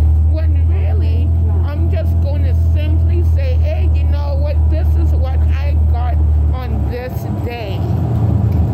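Transit bus interior: the bus's engine gives a strong, steady low drone that falls away about three-quarters of the way through, under the sound of voices talking.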